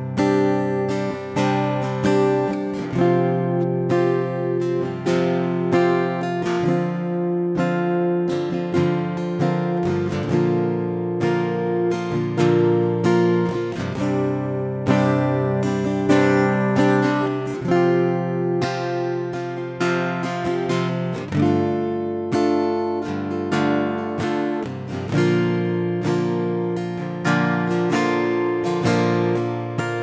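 Acoustic guitar strumming chords in an instrumental passage of an acoustic pop cover song, with no singing.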